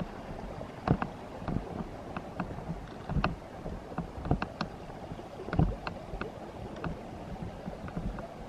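Footsteps on a dirt-and-gravel trail, thumping about once a second with small sharp crunches between, over a steady low rushing background.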